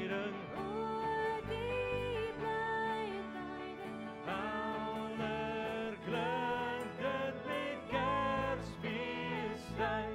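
Live worship band performing a Christmas carol: sung melody with held notes over guitar accompaniment.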